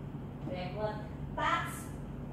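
A woman's voice saying a few short words twice, over a steady low hum.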